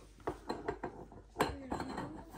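Light clinks and knocks of a ride-on unicorn toy's neck tube being worked into its socket during assembly: several small taps, the loudest about one and a half seconds in.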